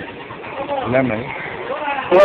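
Indistinct voices in a busy hall: a short, low-pitched voice sound about half a second to a second in, over a background murmur of chatter.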